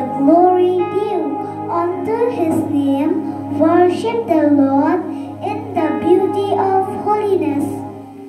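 A young girl singing through a microphone, accompanied by an electronic keyboard holding sustained chords.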